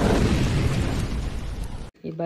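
Intro sound effect: an explosion-like rushing boom that swells suddenly at the start, fades gradually, and is cut off abruptly just before the end.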